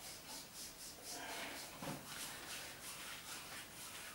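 Faint, brisk rubbing of a massage on bare skin, at about four strokes a second, fading out after the first second or two.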